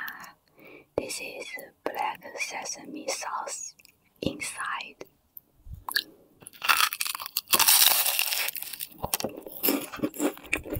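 A short 'ah' and a few soft words close to the microphone, then a bite into an egg tart and close-miked chewing, with a loud crunch of the pastry crust in the second half.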